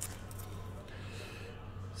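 Faint handling of sports trading cards in plastic sleeves, with a small click at the start, over a steady low hum.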